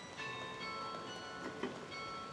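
Carillon bells playing a folk tune from the baton keyboard, several notes struck together and left ringing in long overlapping tones. A sharp clack of the keyboard action stands out about one and a half seconds in.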